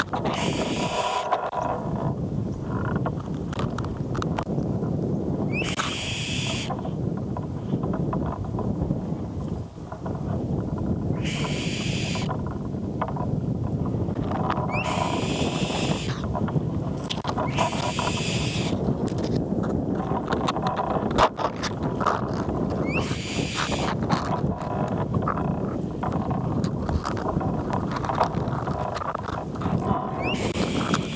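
An eagle calling from the nest: a high, scream-like call repeated about six times, a few seconds apart, each about a second long. Under it, a steady rush of wind on the microphone with leaves rustling.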